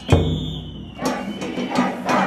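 Festival procession drum: one deep stroke just after the start, then a lull in the drumming where voices are heard.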